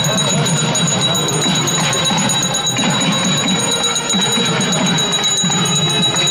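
A hand bell rung rapidly and without pause during a puja, its high ringing steady throughout, over a crowd's chatter.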